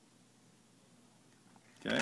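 Near silence: room tone, until a man's voice cuts in near the end.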